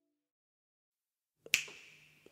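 The last faint tones of a jazz track die away, then near silence, then a single sharp finger snap with a short ringing tail about one and a half seconds in, marking the beat at the start of the next song.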